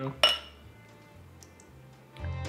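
Two pint glasses clinking together once in a toast: a single short, bright glassy ring about a quarter second in. Faint background music follows.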